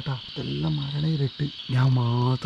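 A man talking, over a steady high trill of crickets chirping.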